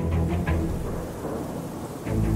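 Dark ambient sound-design bed for a show break: a low held musical drone under a steady rain-like hiss and rumble, easing off slightly toward the end.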